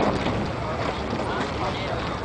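Outdoor background of wind buffeting the microphone, with faint distant voices.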